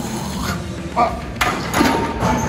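A man grunting with strain as he presses a heavy barbell on a bench, with a forceful, noisy breath about one and a half seconds in.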